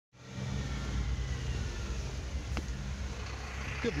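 Steady low rumble of street traffic, with a single sharp click about two and a half seconds in; a man's voice starts right at the end.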